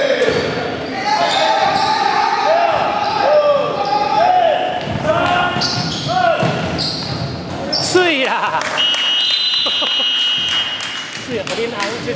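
Game sounds of an indoor basketball game on a hardwood court: the ball bouncing, sneakers squeaking and players calling out, with a steady high tone sounding for a second or so about nine seconds in.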